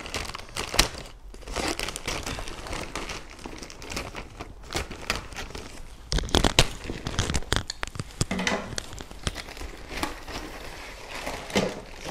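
Black plastic courier mailer bag crinkling and rustling as it is cut open with scissors and pulled apart, in irregular crackles that are loudest about six and a half seconds in.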